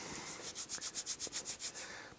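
Hands rubbing back and forth, rolling a pinch of Angora dubbing fur between the fingers and palms into a noodle: a quick, even run of soft rubbing strokes, about seven a second.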